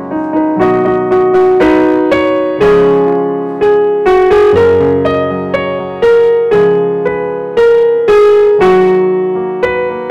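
Yamaha digital piano in a piano voice, played with both hands in F-sharp major: block chords struck every half second to a second, each ringing and fading before the next.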